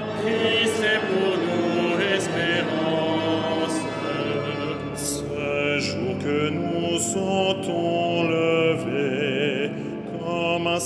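Male cantors singing French liturgical chant of the Vespers office, sustained sung phrases with vibrato, carried by the long reverberation of a large cathedral.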